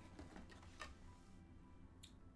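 Near silence, with a few faint clicks of a hard plastic grading slab being drawn out of a box of slabs and handled.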